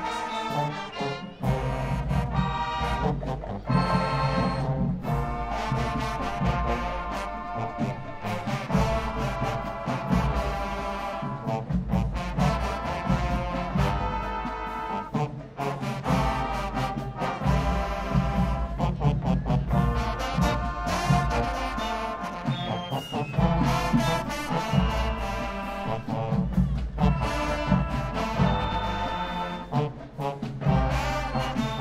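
Marching band playing: brass chords over a heavy bass line, punctuated by frequent drum hits.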